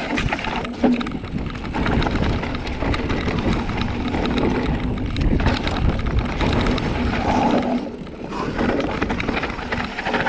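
Mountain bike riding down a rough dirt trail: tyres rolling over loose dirt and stones and the bike rattling with many short knocks over the bumps, with wind rumbling on the camera's microphone.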